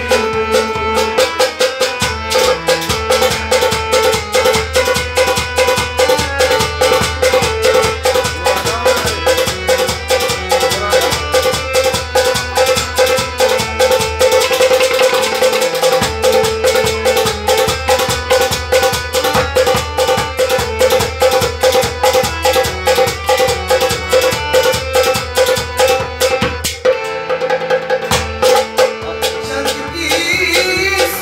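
Live instrumental folk music: a harmonium holds a steady reedy note and plays the melody over fast, rhythmic plucked-string strumming and hand-drum strokes.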